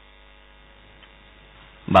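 A low, steady mains hum in the radio recording, with a newsreader's voice starting right at the end.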